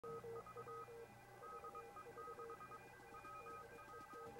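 Faint electronic beep tones in quick, uneven runs, switching between two or three pitches, like dialing or data tones.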